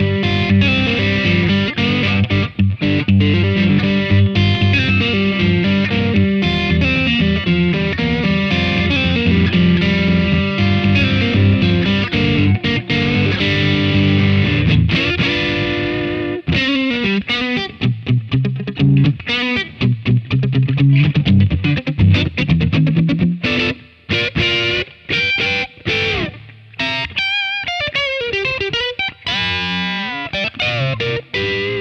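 Fender Custom Shop '61 Telecaster Relic with an ash body and rosewood fingerboard, played through an amp with both pickups together. Dense chording fills the first half, then sparser single-note phrases with short gaps, and wavering bent notes near the end.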